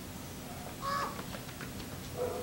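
A raven gives a single short caw about a second in, a call the uploader reads as a warning of a hawk.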